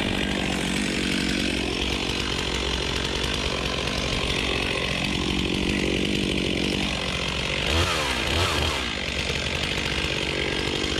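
Chainsaw running and cutting into a standing tree trunk, its engine pitch sagging and recovering as the bar works in the cut. Near the end it gives two quick revs.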